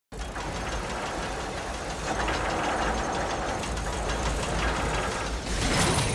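Sound-designed mechanical clatter of turning gears and ratcheting machinery for an animated logo, starting abruptly and running as a dense ticking, grinding texture, with a louder rushing burst shortly before the end.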